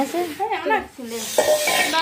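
Women's voices talking. From about a second in, a hissing noise runs under the speech.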